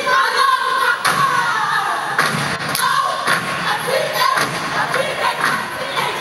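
Step team stomping and clapping in an irregular rhythm, with the steppers shouting a chant near the start, over a cheering crowd.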